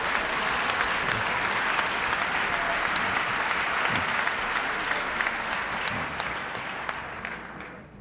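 Large dinner audience applauding in response to the punchline of a joke. The clapping dies away near the end.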